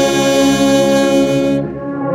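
Church orchestra of saxophone and other wind instruments playing a slow hymn, with the saxophone close to the microphone holding long sustained notes. The sound thins and dips briefly near the end before the next phrase comes in.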